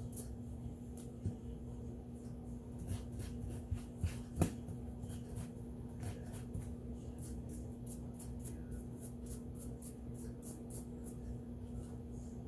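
A small brush scrubbing a Glock 43X pistol part: a run of quick, short bristle strokes on metal, with one sharper tap about four seconds in. A steady low hum runs underneath.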